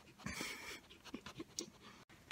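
Great Pyrenees dog breathing close to the phone's microphone: a noisy rush of breath about half a second in, then softer snuffling.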